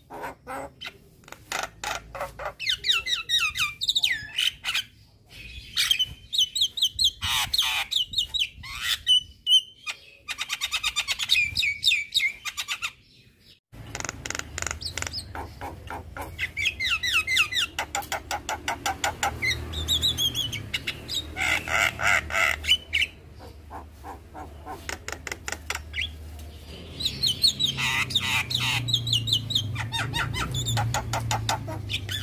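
A young Javan myna singing in fast chattering runs of repeated sharp notes, phrase after phrase with short pauses between. The song breaks off briefly about 14 s in, and a low background hum runs under it after that.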